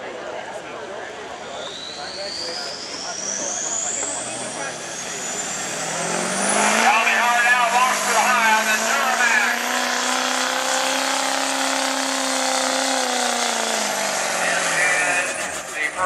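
Chevrolet Silverado's Duramax V8 turbo-diesel under full load pulling a sled: a turbo whine climbs steadily in pitch over the first several seconds, then the engine note rises, holds steady through the pull and falls away near the end as the truck comes off the throttle.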